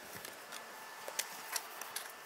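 Quiet room tone with a faint steady hiss and a few small clicks, the last three coming one after another in the second half.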